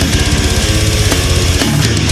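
Brutal death metal recording: heavily distorted electric guitars over fast, dense drumming.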